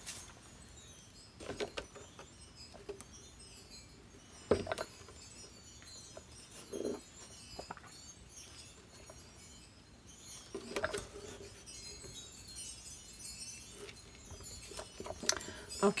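Quiet handling noise: a few light knocks and taps, the loudest about four and a half seconds in, as a canvas board is shifted and turned on a table.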